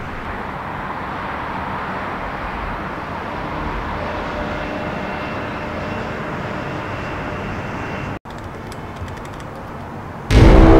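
Steady hum of distant city traffic heard from a rooftop, with faint steady tones joining about halfway through. It breaks off suddenly about eight seconds in and gives way to a quieter stretch with a few faint clicks.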